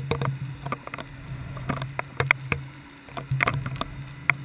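Underwater sound picked up by a GoPro in its housing on a homemade deep-drop rig: a steady low hum with irregular sharp clicks and knocks.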